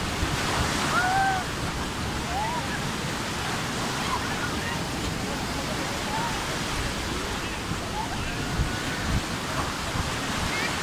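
Small surf breaking and washing through shallow water as a steady rush of foam, with beachgoers' voices calling and shouting in the water. One long rising-then-falling call stands out about a second in.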